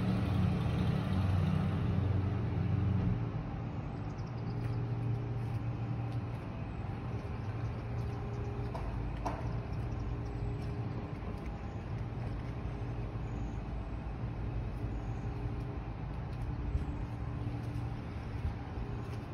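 Steady low hum of an idling motor vehicle engine, a little louder for the first three seconds and then settling to an even drone.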